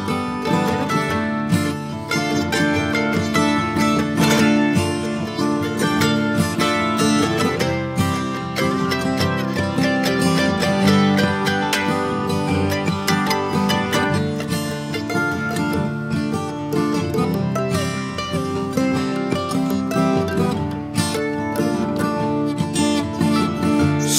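Instrumental break in a country song with no singing: acoustic guitar and other plucked strings playing busy picked notes over a steady accompaniment.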